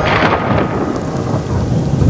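Cartoon thunderclap sound effect: a sudden crack that rolls into a long, low rumble, with the sound of rain.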